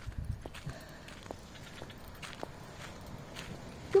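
Footsteps on a concrete path: light, irregular taps.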